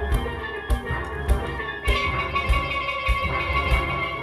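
A steel band playing a Panorama arrangement: a full section of steel pans over a steady drum beat. About halfway through, a held high note comes in.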